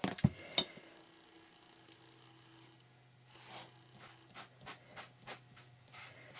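Light handling noises from a plastic pan pastel pan and sponge: a few sharp clicks and taps at the start, a brief soft rub of the sponge on sanded pastel paper in the middle, then a run of soft taps about three a second near the end.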